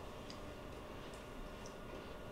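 Quiet room tone with a faint steady hum and a few faint small ticks at irregular spacing.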